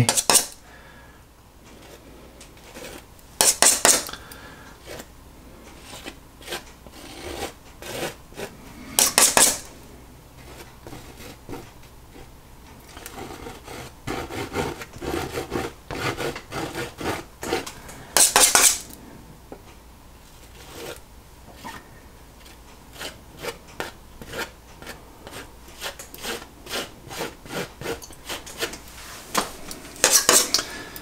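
Metal palette knife scraping oil paint in many short strokes, with three louder scrapes about four, nine and eighteen seconds in.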